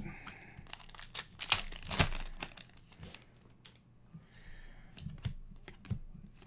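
Trading cards being handled, slid and flicked against one another in the hands: a run of crisp rustles and clicks, louder about one and a half and two seconds in.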